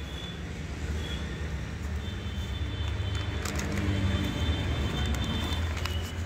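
A steady low engine-like rumble of a vehicle running nearby, with a few faint crinkles as a black plastic nursery bag is torn off a potted plant's root ball.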